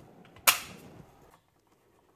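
A single sharp click about half a second in, from hands pulling a drive's plug out of a Raspberry Pi 5 in its small clear case, followed by a few faint clicks of cable handling.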